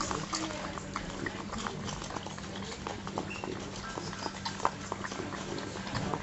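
French bulldog licking ice cream out of a paper cup: a rapid run of short, wet licks and smacks.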